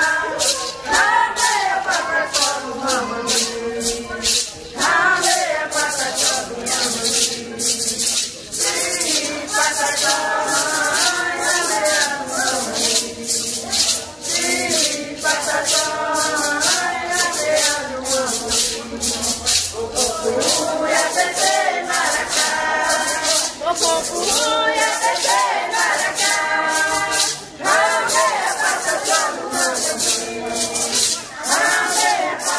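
Voices singing a chant to the steady shaking of maracas, about two shakes a second.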